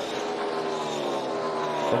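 NASCAR Cup Series stock car, a No. 5 Chevrolet Camaro with a V8 engine, running at racing speed down the track. Its engine note falls slowly in pitch as the car goes by.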